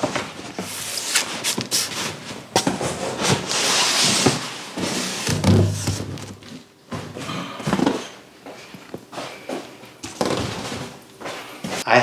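Cardboard boxes scraping and rustling against a larger cardboard carton as they are pulled out of it, with scattered knocks and a dull thump a little past halfway.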